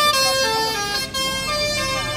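Vehicle horns sounding in several long, overlapping steady tones that shift pitch in steps, over a crowd's voices.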